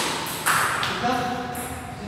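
Table tennis ball knocks off the bat and table about half a second in, then a player's voice in a short, drawn-out exclamation as the rally ends.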